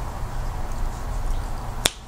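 A steady low hum with one short, sharp click near the end.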